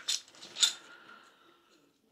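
Metal tent pegs clinking together as they are pulled out of their bag: two short clinks, the second followed by a faint ring that soon dies away.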